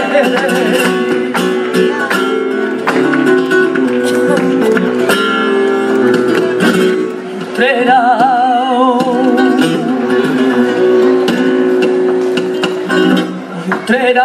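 Flamenco guitar playing bulerías with sharp rhythmic strokes, and a woman's voice singing a wordless wavering melisma in the middle. There are hand claps (palmas) near the start.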